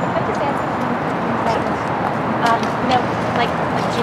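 Faint, indistinct speech over a steady outdoor haze of street noise, with a few light taps.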